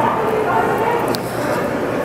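Voices with no clear words, over the chatter of people in a large hall.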